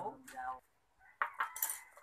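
Light clinks of porcelain bowls, spoons and chopsticks on a table, a few sharp ticks in the last second, after a brief murmur of a man's voice at the start.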